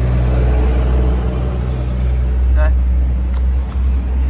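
Daewoo Magnus sedan's engine idling with a steady low rumble and hum. A faint click or two comes near the end.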